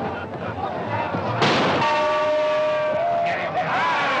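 Crowd at a boxing match cheering and yelling, starting suddenly about a third of the way in, with one voice holding a long shout that rises in pitch before it breaks off.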